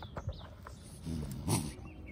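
Raccoon caught in a wire live-catch cage trap growling low, rising to a louder, harsh snarl about a second and a half in.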